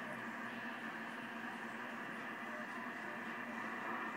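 Steady low background hum and hiss with no distinct events.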